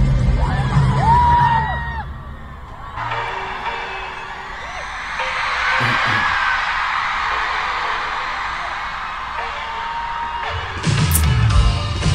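Live pop concert audio: a singer holding long notes over the band, then a dip, then a long stretch of crowd screaming and cheering, with the band coming back in loud, heavy on the bass, near the end.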